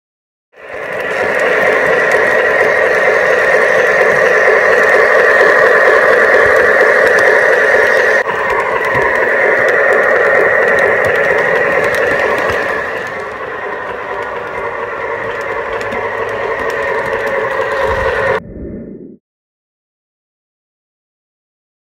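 O-scale model locomotive running along the track: a loud, steady rolling rattle of wheels and motor that eases a little about two-thirds of the way through and then cuts off abruptly near the end.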